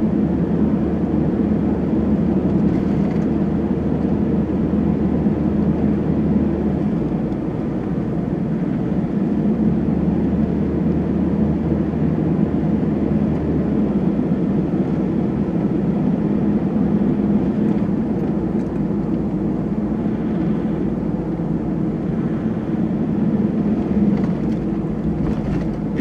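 Steady engine and road noise of a camper van driving uphill on a mountain road. The low hum changes about seven seconds in and again about fourteen seconds in.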